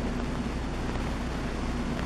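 Steady background room noise with a low hum, with no distinct footsteps or other events.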